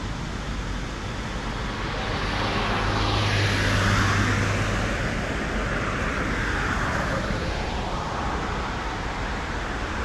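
A car passes close by on the road about four seconds in, its tyre noise and a low engine hum swelling and then fading. A second, fainter swell of passing traffic follows a couple of seconds later.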